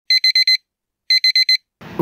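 Electronic alarm beeping: two bursts of four quick beeps, about a second apart.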